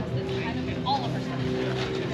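Background chatter of shoppers at an open-air market, with no clear words, over a steady low hum.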